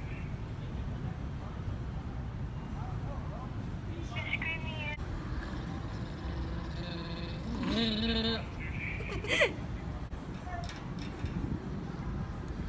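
Short wordless vocal sounds from a person, one about four seconds in and a longer one, rising in pitch, around eight seconds, over a steady low background rumble.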